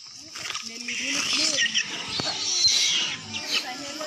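A troop of macaques squealing and chattering in short, high calls, mixed with people's voices.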